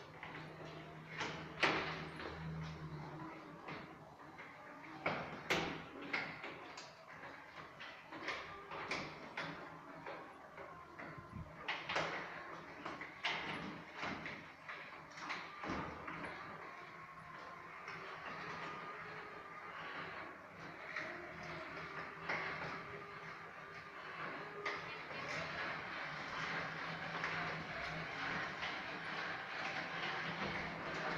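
Electric drive of a Caterwil GTS3 tracked stair-climbing wheelchair crawling down a flight of stairs, with repeated sharp knocks and clunks through the first half. In the second half it gives way to a steadier motor whine.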